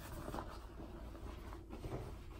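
Faint rustling of a duvet and bedding as someone moves in bed, with soft brushes about half a second in and near the end, over a low steady room hum.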